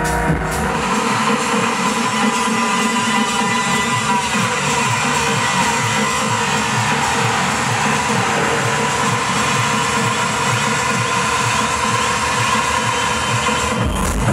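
Electronic dance music from a DJ set over a large festival sound system, in a breakdown. The kick drum and deep bass drop out about a second in, leaving mid and high synth layers going, then the full beat comes back in at the end.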